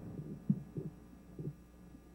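A pause in the conversation, carrying a faint steady low hum from an old studio recording, with three short, soft low pulses in the first second and a half.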